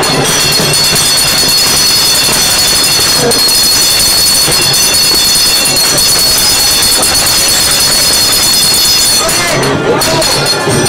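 Loud, steady procession din: many voices together over continuous high metallic ringing, with no break or beat.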